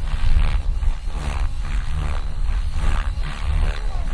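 Radio-controlled helicopter flying aerobatics low over the ground, its rotor blades whooshing in repeated surges, about two a second, over a heavy low rumble.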